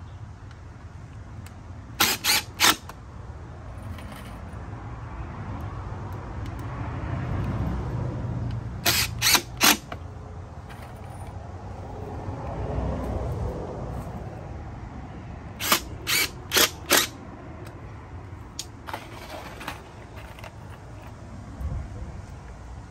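Cordless drill driving screws into pallet wood, its motor running in spells that rise and fall. Between the spells come sharp, loud clacks in quick groups of three or four, which are the loudest sounds.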